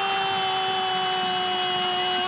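A football commentator's long drawn-out goal cry, one held note sliding slightly lower in pitch.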